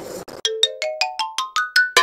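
A comedy sound-effect stinger: a quick rising run of about eight bright, short struck notes, about five a second, climbing in pitch and ending on a louder hit.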